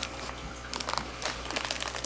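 Plastic livestock shipping bags crinkling as they are handled and set down: a run of short, irregular crackles.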